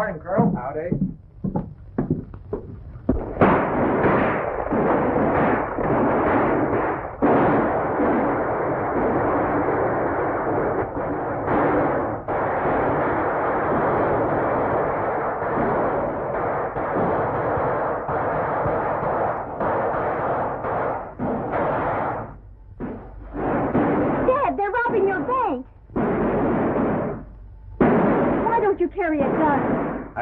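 Rapid, continuous gunshots from riders shooting in a street, mixed with galloping horses, on an old film soundtrack with the highs cut off. The din starts about three seconds in and runs for about twenty seconds, and men's voices follow near the end.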